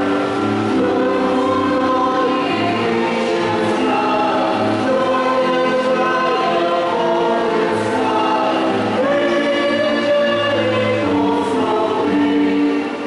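Church choir singing a slow hymn, several voices holding long notes.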